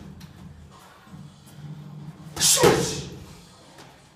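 A punch landing on a hanging teardrop heavy bag together with a sharp hissing exhale, once, about two and a half seconds in.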